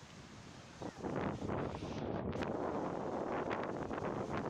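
Wind buffeting the phone's microphone on the open beach, a rough steady rumble that grows louder about a second in.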